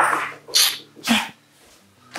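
Short sharp breathy huffs and sniffs from a person, three in about a second and a half.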